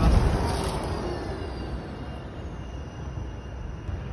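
A bus passing close by on the road and moving away: a low rumble that is loudest at first and dies down over about two seconds, with a faint falling whine.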